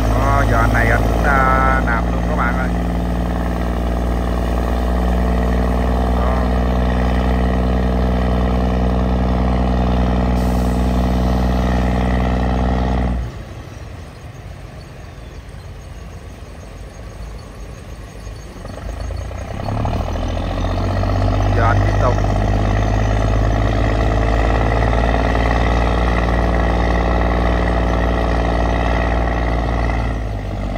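Diesel engine of a grounded self-propelled river barge running hard under throttle as it works to get off the shoal. About 13 s in the engine note suddenly drops back to a much quieter idle, and it picks up again about 20 s in.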